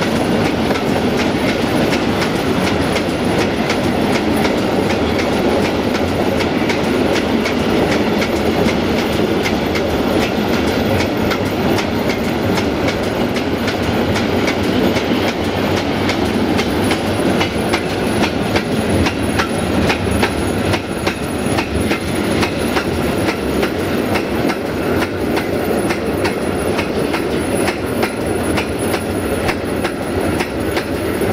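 Freight train of silo wagons rolling past close by: a steady rumble of steel wheels on rail with quick clicks as the wheelsets run over rail joints.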